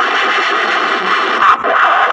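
A loud, harsh, steady rushing noise that stops just after two seconds.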